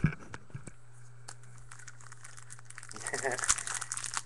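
A few faint clicks, then about three seconds in the wrapper of a trading card pack crinkles as it is torn open by hand.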